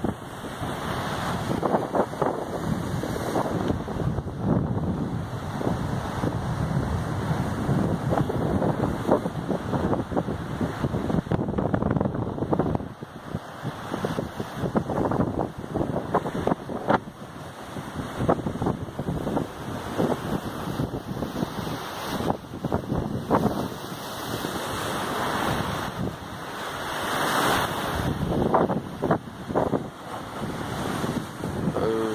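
Surf breaking and washing over rocks at the shore, with strong wind buffeting the microphone in irregular gusts.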